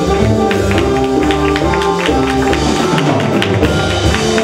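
Live jazz-fusion ensemble playing a rhythmic African-style passage: flute at the front over trombone, electric guitar, vibraphone, bass, drums and hand percussion. Held notes run over many sharp percussive hits, several a second.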